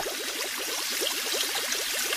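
Water bubbling: a steady, rapid run of small bubble blips, about a dozen a second.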